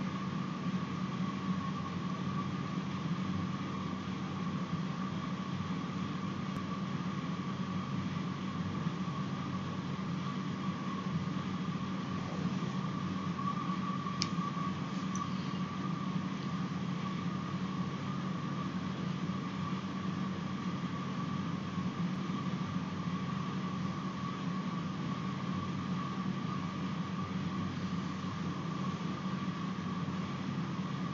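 Steady background hum and hiss, with a faint high whine held at one pitch throughout. There is a single faint click about fourteen seconds in.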